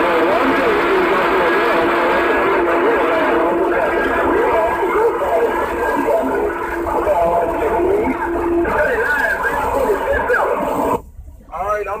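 Several CB radio stations transmitting at once on the same channel. Their garbled voices pile over one another, with a steady whistle underneath that stops about nine seconds in. About eleven seconds in, everything cuts out suddenly: the stations are keying down in a contest to see whose signal comes through on top.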